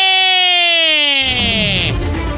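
Radio segment sound effect: a loud electronic tone sliding slowly down in pitch and dropping faster near the end. About a second and a half in, a music bed with a heavy low beat comes in under it.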